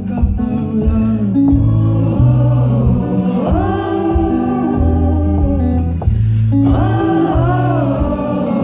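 Live song: a man singing into a microphone, with an acoustic guitar played along and held low notes underneath.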